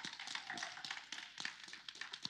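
Light, irregular clicks and taps of handling noise close to the microphone while a mug is raised for a sip.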